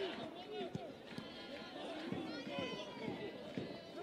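Several overlapping voices calling and shouting across an open football pitch: players and spectators at a live match, no single voice clear.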